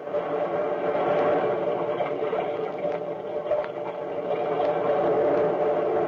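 A loud, steady drone of several held tones that starts suddenly, a sound cue closing the radio drama's final scene.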